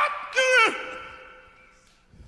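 A gospel singer's loud, pitched sung cry, bending in pitch and ending about three-quarters of a second in. After it the sound dies away steadily to near quiet, as at the end of a song.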